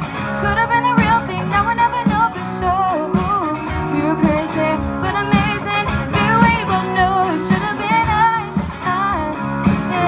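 Live rock band playing a pop song through a PA: a female vocal line of wavering, drawn-out sung notes over electric guitar, bass guitar and drums.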